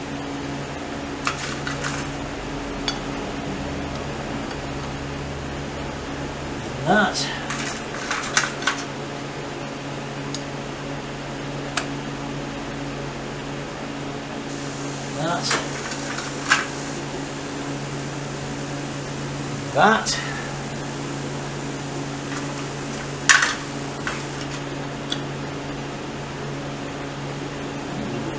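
Scattered sharp metal clinks and taps as a Royal Enfield Bullet's clutch parts, the pressure plate and its springs, are handled and fitted by hand, over a steady low hum.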